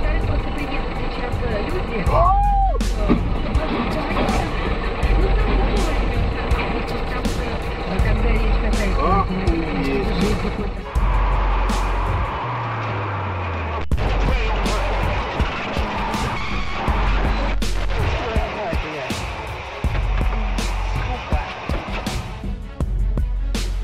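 Dashcam audio of a car on the road, with engine and road rumble inside the cab, changing abruptly as one clip cuts to the next. Voices and background music lie over it.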